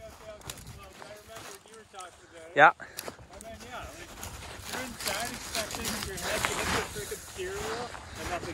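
Footsteps in snow, getting louder from about halfway through.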